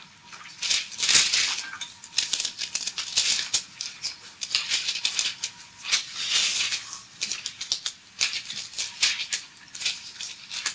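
Pages of a thick AISC steel design manual being flipped and turned: repeated paper rustles and sharp page flicks, coming in bursts.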